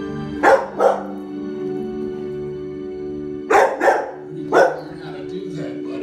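Bernese mountain dog puppy barking: two quick barks about half a second in, two more about three and a half seconds in, a fifth a second later, then a few softer ones. Soft film music plays steadily from the TV underneath.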